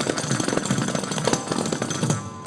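Kanjira frame drums played in a fast, unbroken run of finger strokes, the jingles in their frames rattling with every stroke.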